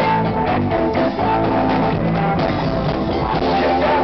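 Live rock band playing: distorted electric guitar and bass over a drum kit, at a steady loud level.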